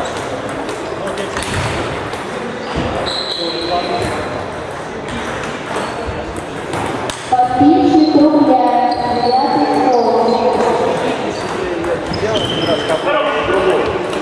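Table tennis balls clicking sharply off bats and tables, a rally of short knocks over a hum of many people chattering in a large echoing hall. A person's voice talks loudly close by from about seven to eleven seconds in.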